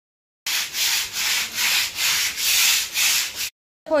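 A stiff-bristled hand broom scrubbing a wet concrete floor in brisk back-and-forth strokes, about seven strokes at roughly two a second, stopping abruptly.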